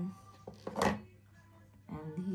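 Small cardboard jewellery boxes being handled: a light knock about half a second in, then a brief scraping rustle of card on card.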